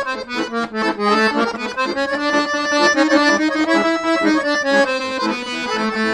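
Weltmeister piano accordion playing a quick solo line in octaves: a run of short notes changing several times a second over lower sustained notes, stopping near the end.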